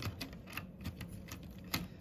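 Plastic LEGO parts clicking and clacking as a battery element is pushed into a LEGO dinosaur toy model, a string of irregular clicks several times a second.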